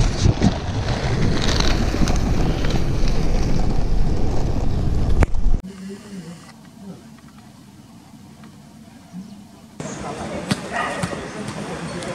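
Loud rumble of wind and rolling penny-board wheels on the camera microphone, which cuts off abruptly about five and a half seconds in; after that the sound is much quieter.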